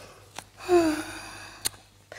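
A woman's breathy sigh, an exhale with a faint falling voice, about half a second in, as she recovers from the effort of an arm balance. Two faint clicks come before and after it.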